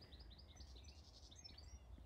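A songbird singing faintly: a quick series of short, high, falling notes, about six a second, over a low rumble of wind or handling noise.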